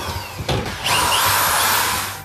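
Power drill running in two bursts, with a short break about half a second in.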